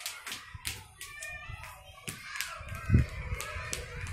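A series of light, irregular taps and clicks, a few a second, with a dull thump about three seconds in.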